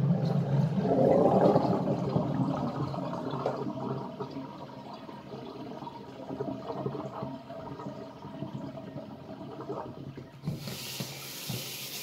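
Water running and splashing in a kitchen sink as the washing-up water is changed for fresh, louder for the first few seconds and then quieter. A brighter hiss of running water starts shortly before the end.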